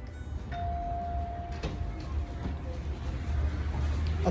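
A single steady electronic beep tone starting about half a second in, strong for about a second and then fading away, over a steady low rumble, with a small click partway through.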